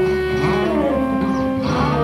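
Live free-improvised jazz from saxophone, electric guitar and drum kit, with held notes and several sliding pitch glides among them.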